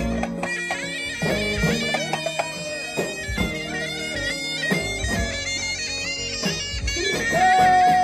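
Live Tunisian hadra music, loud: a reed wind instrument plays a wavering, ornamented melody over bendir frame drum strokes. Near the end the melody settles into one long held note.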